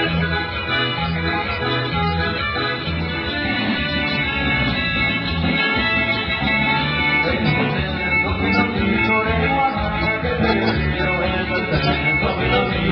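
Live band music for dancing, a steady repeating bass line under sustained melody tones.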